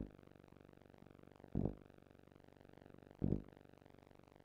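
Dull low thumps repeating evenly, about one every second and a half (three in all), over a faint steady hiss.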